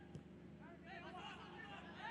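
Faint, distant voices of players calling out on the pitch, over low stadium background noise.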